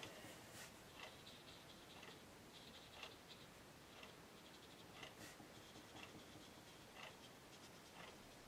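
Near silence except for faint, soft scratching of an Aqua Painter water brush scribbled over watercolor paper, blending out marker ink, with a light stroke every second or two.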